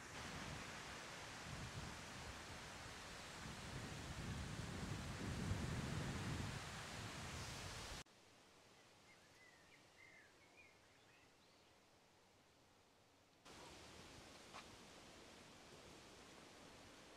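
Wind gusting over the microphone and through long grass, strongest around five seconds in. It cuts off suddenly at about eight seconds to a much quieter stretch with a few faint bird chirps, then a steady low outdoor hiss returns near the end.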